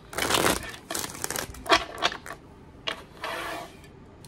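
A deck of tarot cards being shuffled by hand: a loud riffle of cards at the start, then clicks and taps as the cards are squared and handled, and a softer rustle of shuffling near the end.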